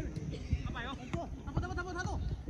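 Distant shouting from players and spectators at a football match: short wavering calls twice, over a low background rumble. A single sharp thump right at the start.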